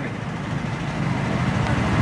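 Road traffic noise: a steady low hum that grows a little louder toward the end.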